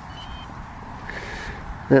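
Quiet outdoor background with a low rumble and a brief faint high beep near the start, before a man says "yeah" at the very end.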